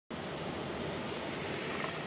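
River rapids rushing steadily.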